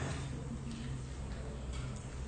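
Room tone in a pause between speech: a steady low hum with a few faint, irregular ticks.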